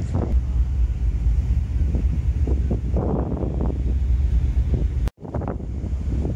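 Wind buffeting the microphone on a ship's open deck: a heavy, gusty rumble that swells and eases unevenly. The sound drops out for a moment about five seconds in, then the wind rumble resumes.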